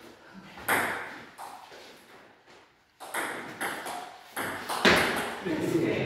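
Table tennis rally: the ball clicks sharply off paddles and the table in an irregular run of knocks. There is a short pause about three seconds in, then the hits come faster, roughly two a second.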